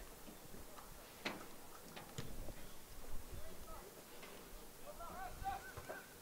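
Soccer field sound during play: a couple of sharp knocks about one and two seconds in, then players' distant shouts near the end.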